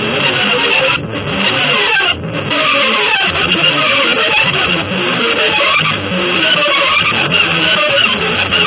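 Electric guitar music: a dense, continuous run of many fast, changing notes with no pauses.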